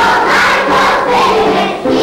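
A large group of young children singing together in unison, loud and a little ragged.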